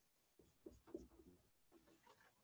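Faint writing sounds: a cluster of short scratchy pen strokes, as terms are written or struck out.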